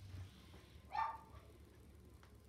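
A dog barks once, a single short, high-pitched bark about a second in.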